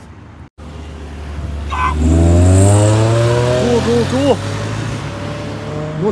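A car engine accelerating close by, its note rising steadily as it pulls away, loudest about two seconds in.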